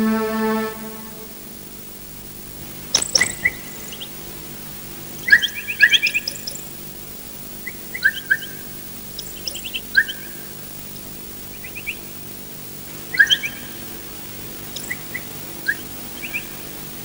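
A string music cue ending about a second in, then birds calling in short, scattered chirps over a faint steady hum.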